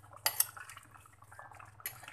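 Metal spoon clinking against an earthenware clay pot while stirring a thick fish curry: two sharp clinks close together about a quarter second in, soft stirring, and another clink near the end.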